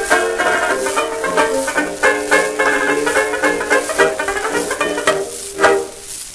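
Early-1920s banjo-led dance orchestra playing a ragtime novelty number from a 78 rpm shellac record, with surface crackle and hiss under the music. The tune ends on a final accented chord near the end, leaving only the record's surface noise.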